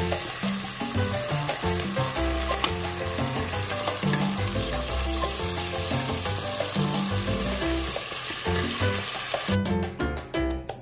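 Chopped onions sizzling in hot oil in a pot as a sauce is poured in and stirred with a wooden spatula, over background music with a bass line. The sizzle drops away near the end.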